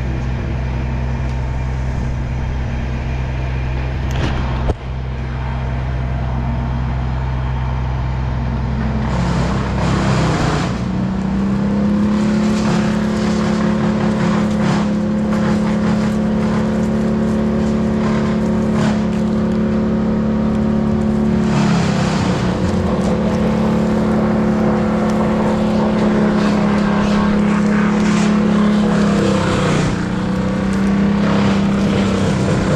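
A crane's engine running at a low, steady idle, then revving up about ten seconds in and holding at a higher speed, dipping briefly twice. This is typical of the crane taking up a load. There is a single sharp knock at about five seconds.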